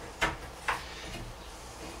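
Two sharp clicks about half a second apart as a bar clamp and cordless drill are handled against a wooden cabinet frame.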